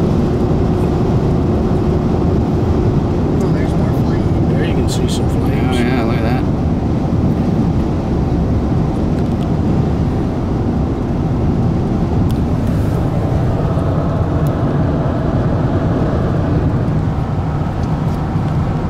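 Steady road and wind noise of a car driving at speed, heard from inside the cabin, with a few brief clicks and knocks about four to six seconds in.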